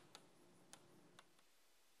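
Near silence broken by three faint ticks of chalk tapping on a blackboard as handwriting goes on, about half a second apart in the first second and a half.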